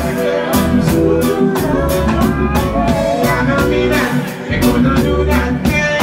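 Live reggae band playing: drum kit keeping a steady beat over electric bass and guitar. The bass drops out briefly a little after four seconds in, then comes back.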